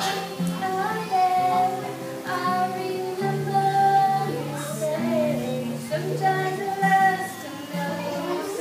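A young girl singing a slow ballad, holding long notes, to a steadily played acoustic guitar.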